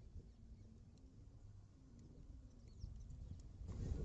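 Faint outdoor background: a low steady rumble with a few soft ticks, and a brief high chirp, like a bird, about two and a half seconds in. A louder rustling builds just before the end.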